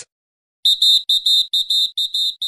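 Rapid high-pitched electronic beeping sound effect, about five short beeps a second, starting about half a second in after a brief silence.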